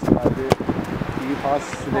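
Players' voices calling out across the pitch, with a sharp knock of a football being kicked about half a second in.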